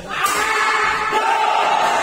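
Hall crowd of badminton spectators shouting and cheering, breaking out suddenly just after the start and carrying on loudly as the rally ends.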